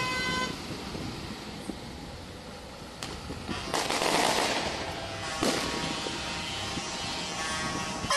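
Heavy trucks rolling slowly past in a convoy, a low engine-and-road rumble. There is a sharp bang about three seconds in, a burst of hissing noise around four seconds, and another sharp bang about five and a half seconds in. Music fades out in the first half second.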